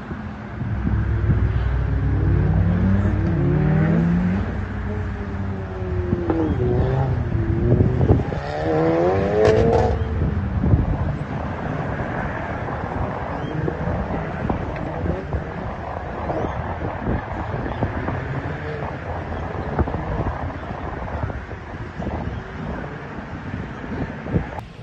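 Tuned MK7 Volkswagen Golf R's turbocharged 2.0-litre four-cylinder, fitted with an aftermarket turbo, revving up and down repeatedly as it accelerates between the cones of an autocross course.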